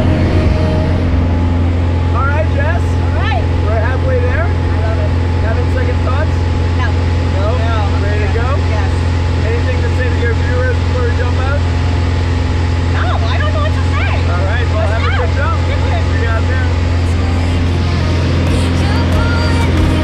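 Steady drone of a small single-engine propeller plane's engine heard from inside the cabin, with indistinct voices talking over it.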